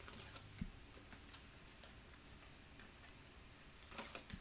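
Faint scattered ticks and small crackles of fingers picking at and peeling the paper liner off strips of double-sided tape on cardstock, with one soft thump about half a second in.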